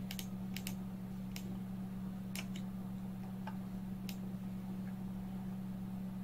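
Scattered sharp clicks from a computer mouse, about ten spread unevenly through the stretch, over a steady low hum.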